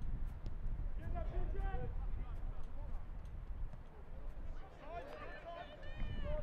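Men's voices shouting and calling out on the field, heard at a distance in two spells, over a steady low rumble of outdoor ambience.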